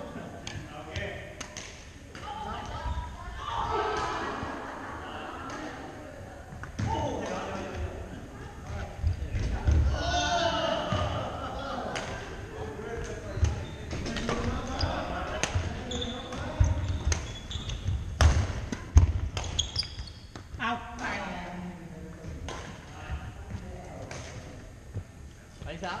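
Badminton rally in a large, echoing gym: sharp smacks of rackets hitting the shuttlecock and thuds of feet on the hardwood floor, under players' voices. The loudest thud-and-smack comes about three quarters of the way through.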